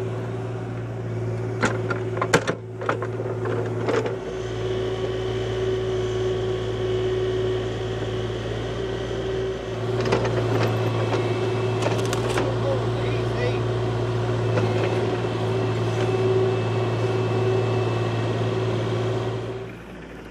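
Diesel engine of a Kubota mini excavator running steadily under load while its bucket digs and dumps dirt in a trench. There are a couple of sharp knocks about two seconds in.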